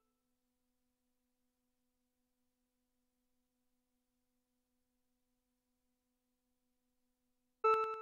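Near silence with a faint low hum, then, near the end, one bright pitched electronic tone that repeats in quick echoes, each softer than the last, fading out over about a second: a short delay line with feedback.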